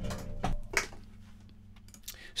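Faint steady low hum from a plugged-in bass guitar's signal chain, with two short clicks in the first second.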